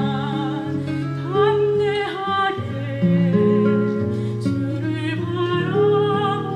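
Soprano singing with vibrato, accompanied by a classical guitar whose plucked low notes ring underneath.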